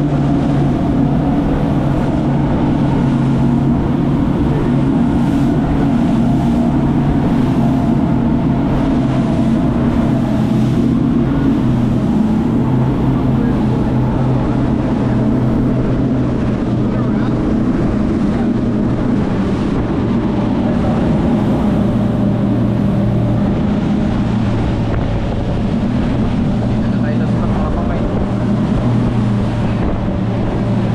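Motorboat engines running steadily at cruising speed, a loud even drone, with rushing wind and water from the hull under way.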